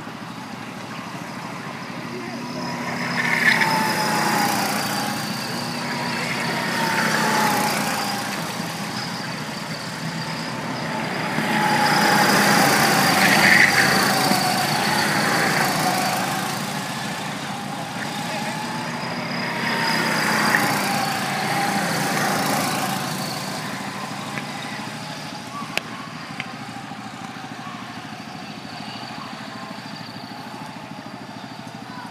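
Go-kart engines buzzing as karts lap the track, the sound swelling and fading as each pass goes by and the pitch rising and falling with the throttle; the loudest pass comes about halfway through.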